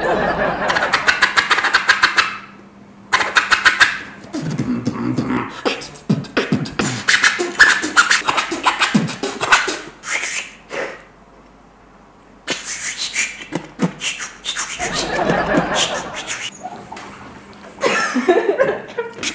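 Beatbox 'scratch' made with the mouth, copying a DJ's record scratch: runs of fast clicks and swishing sweeps, tried several times with short breaks between them. It falls nearly silent for about a second and a half, around eleven seconds in.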